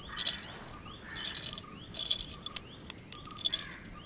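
Light metallic jingling in short bursts about once a second, with one brief, high clear clink ringing for under a second about two and a half seconds in.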